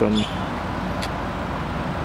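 Steady background noise, a low rumble with hiss and no distinct pitched source, with a single faint click about a second in.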